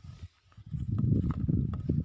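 Footsteps on dry soil and pine-straw mulch, with low rumbling handling noise close to the phone's microphone that grows loud in the second half.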